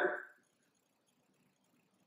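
A man's voice trailing off in the first moment, then near silence: room tone.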